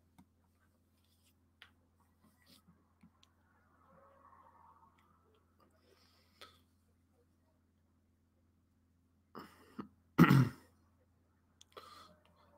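Near silence over a faint steady low hum, broken about ten seconds in by a man clearing his throat in a short, sharp burst, with a couple of smaller throat noises just before it.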